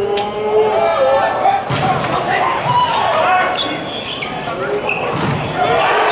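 Volleyball rally in an indoor arena: the ball is struck hard on the serve about two seconds in and hit hard again near the end, with players' shouts and voices echoing around the hall.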